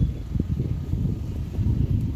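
Wind buffeting the microphone: a low, uneven rumble that swells and dips.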